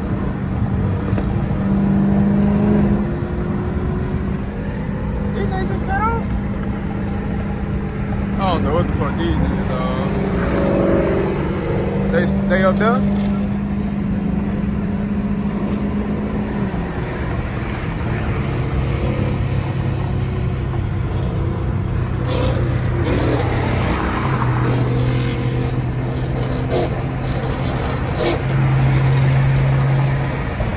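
Car engine cruising at highway speed, heard from inside the cabin as a steady drone with tyre and road noise. A little past halfway the drone drops to a lower steady pitch and holds there.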